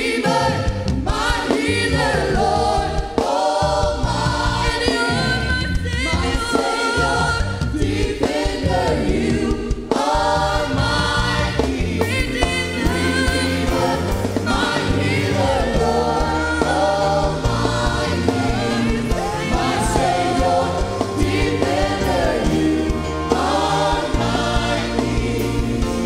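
Live gospel worship music: a group of singers on microphones singing together over a band of drum kit and bass guitar.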